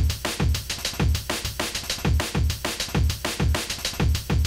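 Chopped breakbeat played from a sampled drum break cut into eighth-note slices, stepping through the slices in a loop that runs slightly faster than the bar, so the order of the chops shifts. Heavy kicks and snares come several times a second in a fast, jungle-like groove.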